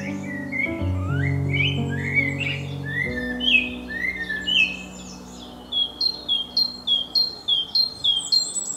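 Songbirds singing: a series of rising whistled notes, then from about six seconds a quick run of short repeated notes, about three a second. Soft background music with held chords fades out about three seconds in.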